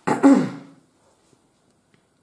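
A person clearing their throat once: a short, sharp voiced burst that falls in pitch and dies away within about half a second.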